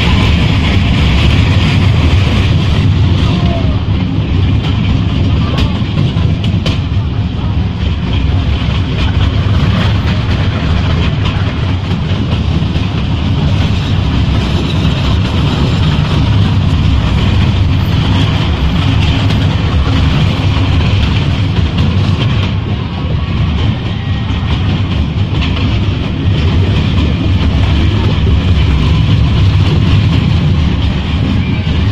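Tourist train running steadily along its track, heard from on board an open carriage: a constant, low-heavy rumble.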